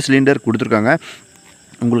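A man speaking for about a second, a short pause, then speaking again near the end, with a thin, steady, high-pitched whine underneath throughout.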